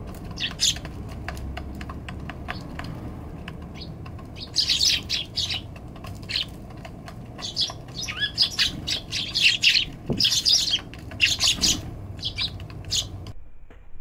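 Eurasian tree sparrows chirping, a few calls at first and then a busy run of overlapping chirps, while their beaks tap on the wooden feeder tray as they peck at seed. The sound cuts off abruptly near the end.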